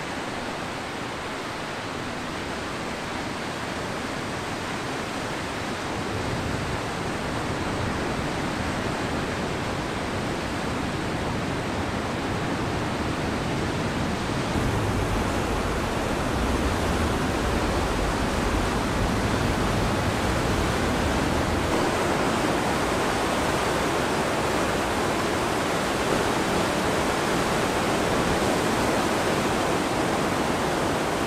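Ocean surf: a steady wash of breaking waves and white water, growing louder about halfway through.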